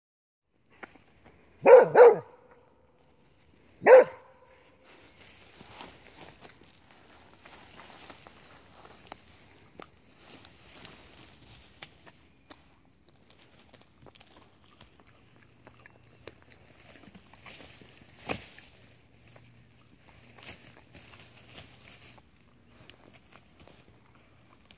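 A dog barks three short times in the first few seconds. Then faint rustling of bilberry shrubs and munching as the dog eats blueberries off the plants, with one sharp click a little past the middle.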